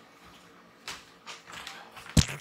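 A few soft footsteps and knocks, starting about a second in and coming about three times a second, as a person walks across a small room.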